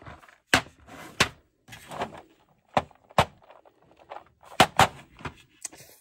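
Sharp clicks and clacks of hard plastic, about half a dozen spread over the few seconds, as plastic bead storage trays and their small clear containers are handled and tapped.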